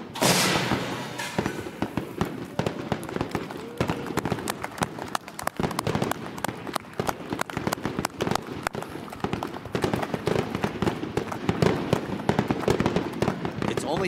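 Confetti cannons fire with a rushing blast at the start, followed by dense, irregular clapping that goes on throughout.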